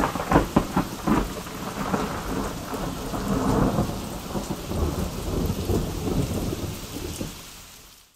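Thunderclap with rain: a sharp crackling burst at the start, then a long rolling rumble over steady rain, fading out near the end.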